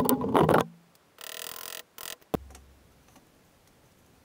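Leather seat cover being handled and pulled across the sewing-machine bench: a short loud clatter, about half a second of rustling and sliding, and a sharp knock a couple of seconds in.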